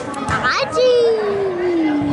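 Children and spectators shouting during an indoor youth soccer match: brief high-pitched shouts, then one long drawn-out shout that slowly drops in pitch and swoops up sharply at the end.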